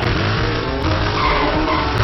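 Quad bike and dirt bike engines revving, with tyres skidding, in a film's chase sound mix with music underneath.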